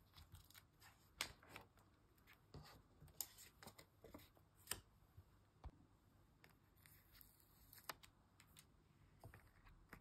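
Faint, scattered soft clicks and rustles of paper as sticker album pages and a peel-off sticker are handled, with a few sharper ticks among them.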